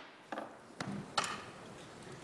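A gavel strike's echo fading in a large hearing room, then three light knocks and clatters over a steady murmur of room noise as people start to move.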